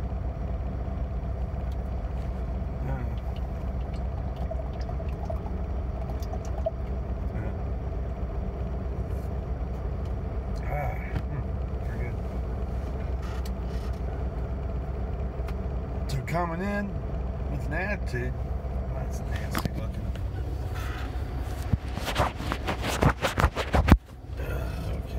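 Steady low hum of an idling semi truck, heard from inside the sleeper cab. Near the end come a series of knocks and clicks as the phone is handled.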